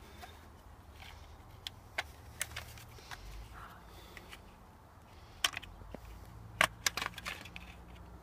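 Old plastic housing of a Renault Megane fuse and relay box being prised apart by hand: scattered sharp clicks and cracks as its clips let go, the loudest in a cluster about six and a half to seven seconds in.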